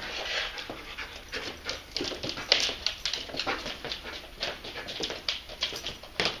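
A German shepherd explosive detection dog sniffing hard along a door and the floor: an irregular run of short, quick sniffs and breaths, several a second.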